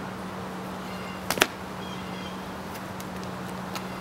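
A cat leap done the wrong way, with the hands hitting a stone wall first and the feet slamming in after, which is unsafe. It makes one sharp impact about a second and a half in, followed by a few faint scuffs as he climbs up the wall, all over a steady low hum.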